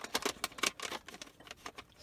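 Plastic cassette tape cases clicking and clattering against one another as they are handled in a tape carrying case: a quick run of clicks in the first second, then a few scattered, fainter ones.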